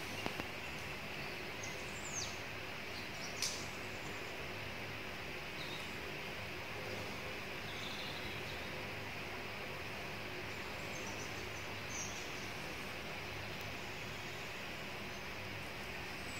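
Steady outdoor forest ambience with a few short, faint bird chirps: one about two seconds in, one about three and a half seconds in, and one near twelve seconds.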